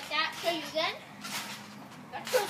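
A boy's high-pitched voice making brief wordless vocal sounds in the first second, with a short noisy swish from the trampoline about halfway through as he bounces.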